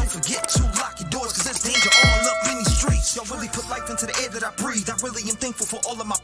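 Hip hop track with a man rapping over a beat of deep kick drums. A bell-like notification ding rings about two seconds in.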